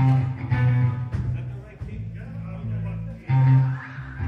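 Live band of electric guitars, bass guitar and drums playing the opening of a song, with loud chord hits at the start and again near the end.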